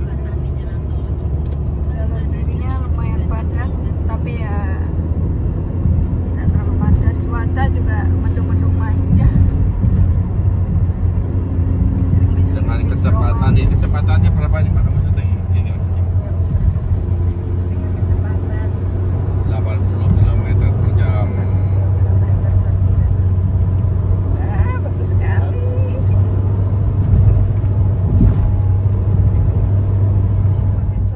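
Steady low road and engine rumble heard inside a car's cabin while it drives along a highway, with voices talking in the background at times.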